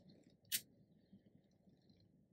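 Near silence with a single brief, soft rasp about half a second in: acrylic-type yarn being tugged out of crochet stitches as an amigurumi piece is unravelled.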